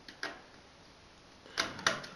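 USB plug of a small oscilloscope stick being pushed into a laptop's USB port: a light click, then two sharper clicks in quick succession near the end as it seats.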